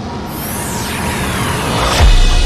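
Logo-intro sound design: a music bed with swooshing sweeps that glide down in pitch, building steadily louder toward the end.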